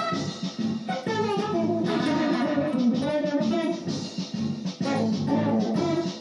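Electric guitar playing a wavering melodic lead over a band with bass guitar.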